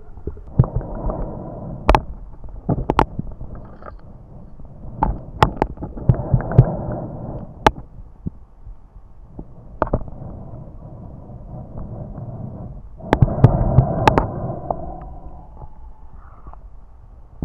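Muffled underwater sound heard through a camera's waterproof housing: a diver swimming, with the water noise swelling up every few seconds as he moves, and sharp clicks scattered through it.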